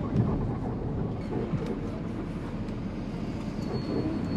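Steady rumble of road and engine noise inside the cabin of a moving passenger van.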